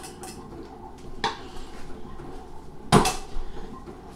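Light clinks of a metal utensil against a tin can of tuna and a bowl, with one much louder clunk about three seconds in.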